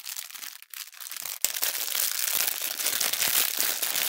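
Clear plastic wrapping crinkling as it is handled by hand. It is fainter for the first second, then a sharp snap about one and a half seconds in, followed by steady dense crinkling.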